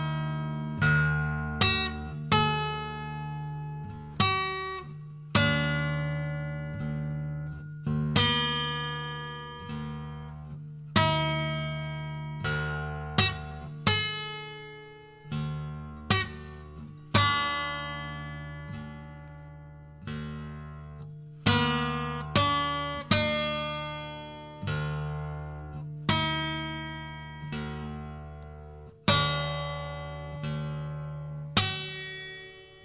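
Guitar playing slow, widely spaced plucked notes and chords, each ringing out and fading, over a steady low drone.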